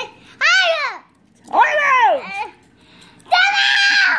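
A young boy's high-pitched playful screams, three of them: the first rises and falls, the second falls away, and the third is held for about a second near the end.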